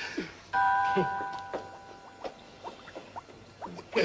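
A bell-like chime struck once about half a second in, a few clear pitches ringing together and slowly dying away: the magic sound effect for Santa turning invisible after smelling the flower.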